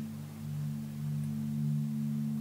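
Low, sustained music drone: a few steady low tones held without change, with no melody.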